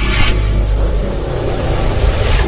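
Cinematic logo-intro music and sound effects: a loud, deep bass rumble, with a brief whoosh about a quarter of a second in.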